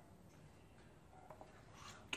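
Near silence: faint room tone, with a couple of soft clicks about a second and a half in and a brief soft rub near the end as a wooden spoon spreads sauce on a plate.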